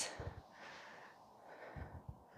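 Faint breathing and two soft low thumps, about a third of a second in and near the end, from a bare foot tapping a wooden floor.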